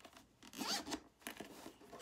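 Zipper of a hard-shell carrying case being pulled along, in one short run loudest about half a second in.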